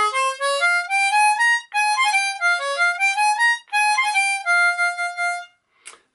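Diatonic harmonica in B-flat retuned entirely to a minor key, playing a quick melody of single notes that climbs and falls, with two short breaks, and stopping shortly before the end.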